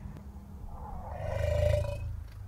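A wild animal calling in the dark: a low, pulsing rumble that swells to its loudest about a second and a half in, with a higher drawn-out tone over it in the second half. It is taken on the spot for elephants trumpeting all around, though the listener is unsure what the sound is.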